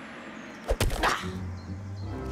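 Cartoon sound effect of a large hardback book thudding down onto the ground: a sharp double thump less than a second in, over background music, followed by a short "ah".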